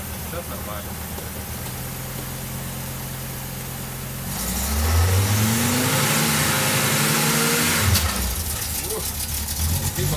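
Audi 100 C3 2.3E's five-cylinder engine idling, then revved about four seconds in, held at higher revs for a few seconds and let fall back toward idle near the end.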